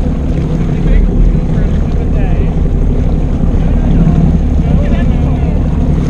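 Jet ski engine running under way, with a steady rumble of wind on the microphone and the rush of water.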